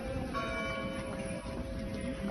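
A bell struck once about a third of a second in, its several tones ringing on and slowly fading, over a steady low background rumble: the mournful toll that goes with a Good Friday Epitaph procession.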